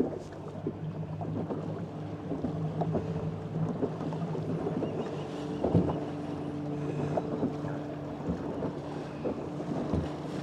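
ePropulsion Navy 6.0 electric outboard humming steadily as the boat motors forward, with chop slapping irregularly against the fiberglass hull and wind buffeting the microphone.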